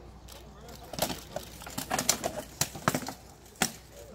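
Armoured combat: a rapid, irregular flurry of about eight sharp knocks as weapons strike shields and armour. It starts about a second in and the last blow lands near the end.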